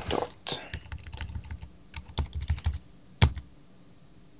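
Computer keyboard typing: a run of quick key presses, with one louder keystroke a little over three seconds in.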